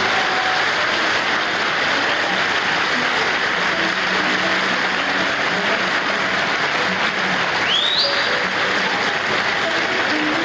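A concert hall audience applauding steadily just as a sung phrase ends, heard on an old live recording. About eight seconds in, one short call rises in pitch over the clapping.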